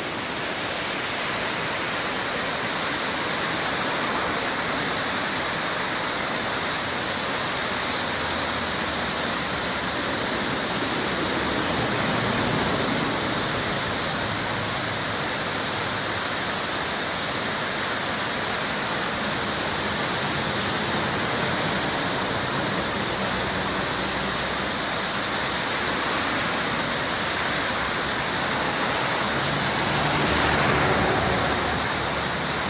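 Piracicaba River running high and muddy through whitewater rapids: a steady, continuous rush of water.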